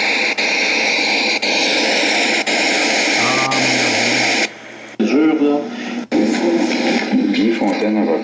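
Recorded court-hearing audio played back through loudspeakers: a loud steady hiss, broken by brief dropouts about once a second, cuts off about four and a half seconds in. After a short pause a voice on the recording starts speaking.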